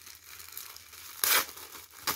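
Thin clear plastic packaging crinkling and rustling in the hands as it is pulled open, with one louder burst of crackling a little over a second in.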